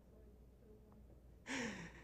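Near silence, then about one and a half seconds in a short breathy sigh from a man, falling in pitch, close to a handheld microphone.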